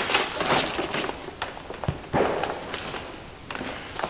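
Hands rummaging through a cardboard box of used engine parts: rustling and scraping of cardboard and packaging, with a few sharp knocks of parts against each other.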